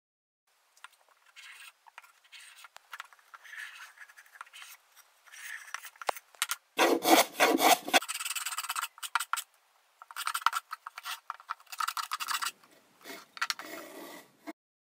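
Repeated scraping strokes of a hand tool shaving chamfers along the edges of a wooden board, with a heavier stroke about seven seconds in.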